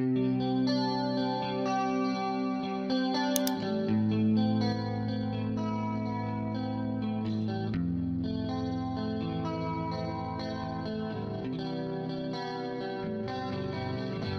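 Clean electric guitar track playing back through a compressor plugin: sustained chords that change every few seconds at an even level. A short click sounds about three and a half seconds in.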